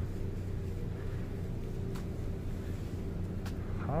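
Steady low hum of city background noise, with a constant droning tone and two faint clicks about two and three and a half seconds in.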